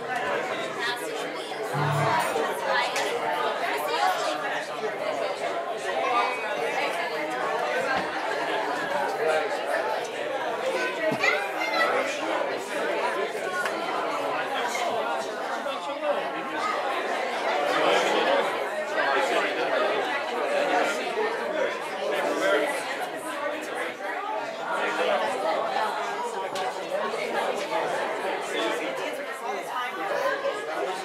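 A congregation chatting and greeting one another all at once: many overlapping voices in a large room.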